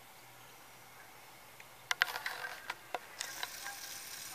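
Quiet room tone, then about two seconds in a quick run of sharp clicks and knocks over about a second and a half, followed by a slightly louder faint hiss.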